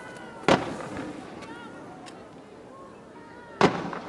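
Fireworks going off: two sharp bangs about three seconds apart, each trailing off in an echo.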